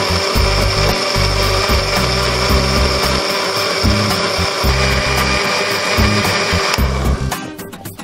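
Miyoko electric blender running steadily, grinding soybeans and water into soy milk, with a high whine; it cuts off about seven seconds in.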